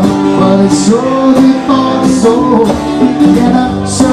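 Live acoustic band music: a strummed acoustic guitar with conga drums, played steadily through the whole stretch.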